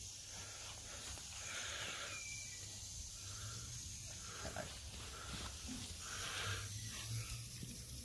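Mamod live-steam model traction engine running on a static test, unloaded with its driving band off the flywheel: a soft, steady steam hiss.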